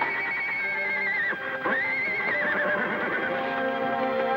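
A horse whinnying twice. Each is a long wavering neigh that drops in pitch at the end, over background music.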